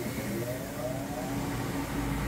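Turbofan convection oven's fan motor spinning up after the oven is turned back on: a whine that rises steadily in pitch for about two seconds over a steady electrical hum.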